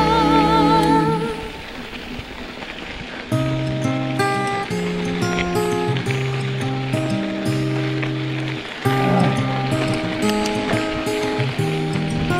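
Background music. A sung pop song tails off in the first second or so. After a short, quieter gap, a new track starts about three seconds in, with held keyboard-like notes over a steady beat.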